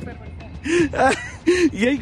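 A man laughing in short breathy bursts, four of them in the second half, over a low steady background rumble.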